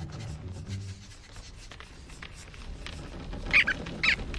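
Animated flying squirrel character letting out a high shriek of alarm, in two short bursts about half a second apart near the end, over faint rustling movement.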